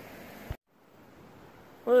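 Faint, even background hiss broken about half a second in by a sharp click and a moment of dead silence, the mark of an edit splice between two shots; the faint hiss then returns.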